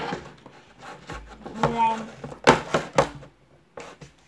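A small box being opened and its contents handled: a sharp click at the start, then two louder knocks about half a second apart past the middle.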